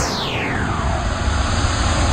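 Synthesized whoosh sound effect for an animated title intro: a whistling tone sweeps down in pitch over about a second, over a steady hissing rush and low rumble.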